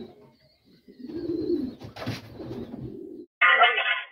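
Racing pigeons cooing, a low rolling coo from about a second in. Near the end a louder person's voice cuts in suddenly.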